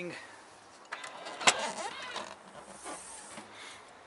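Boot lid of a BMW 325i convertible being released and opened: a sharp latch click about a second and a half in, within a short stretch of mechanical noise as the lid lifts, then softer rustling.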